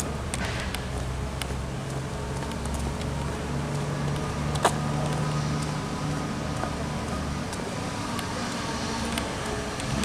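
Road traffic from a nearby street: a steady low hum of car engines that swells in the middle, as if a car were passing. A single sharp click about halfway through.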